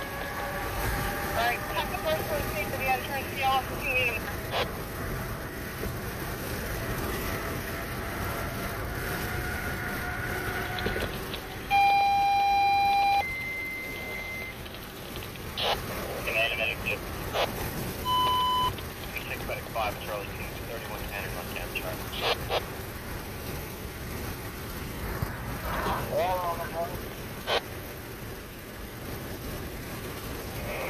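Fire radio scanner over road noise inside a moving car. About twelve seconds in, a two-tone alert sounds: a loud steady low tone lasting about a second and a half, then a higher tone for about a second. A short beep follows a few seconds later, and brief garbled transmissions and squelch clicks come and go.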